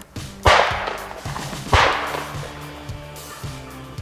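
Two close shotgun shots about a second and a quarter apart, each a sharp crack with a trailing echo, over background music.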